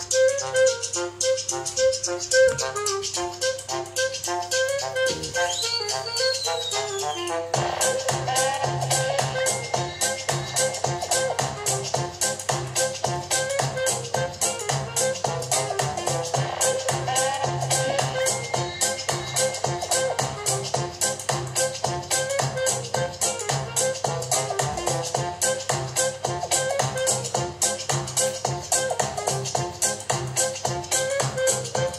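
Music played through a Nokia MD-12 portable Bluetooth speaker. It opens with a light melodic phrase, and about seven seconds in a fuller part with a steady beat comes in.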